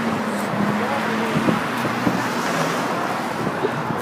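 Steady road traffic noise from cars passing on the street, with a faint low engine hum.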